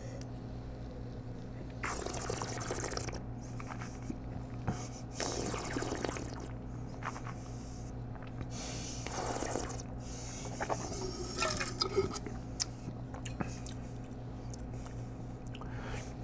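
A taster sipping red wine, drawing air through it in a few hissy slurps and swishing it around the mouth, with liquid sounds that fit spitting into a stainless-steel spit cup.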